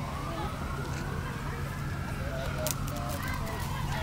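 A siren wailing, its pitch rising slowly through the first half and falling back by the end, over a low steady engine hum.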